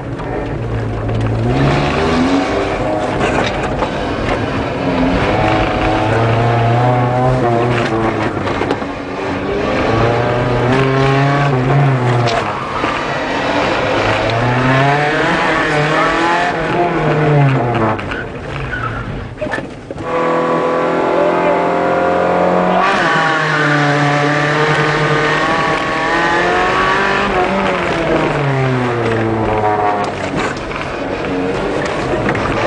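Rally car's engine heard from inside the cabin, revving up and dropping back every couple of seconds as the car accelerates and slows between cones on a tight course. About two-thirds of the way through the revs briefly fall away, then hold steady for a few seconds before climbing and falling again.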